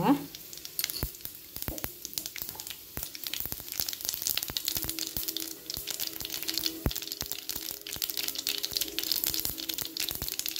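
Oil sizzling and crackling in a non-stick pan as a heap of small white grains fries in it, with many quick pops that grow denser in the second half. A faint steady hum comes in about halfway.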